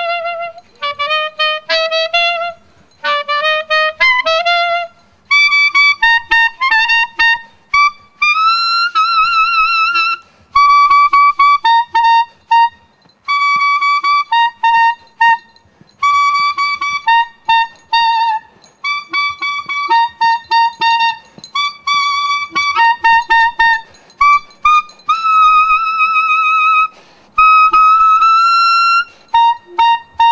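Solo clarinet played live, a melody in short phrases separated by brief pauses. The first few seconds stay in a lower range; after that the notes sit higher, with some longer held notes carrying a wavering vibrato.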